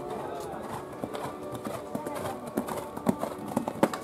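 Hoofbeats of a horse cantering on a sand show-jumping arena, with sharp strikes that grow louder in the second half as it reaches a fence and takes off.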